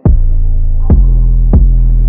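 UK drill beat playing: a deep 808 bass note starts and is held through, with three sharp drum hits over it, the first with the bass note and the next two a little over half a second apart.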